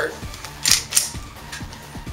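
Two quick, sharp clicking scrapes about a third of a second apart as the slide of an Echo1 Lone Wolf Timberwolf gas blowback airsoft pistol is worked during takedown to slide it off the frame. Background music with a steady beat plays underneath.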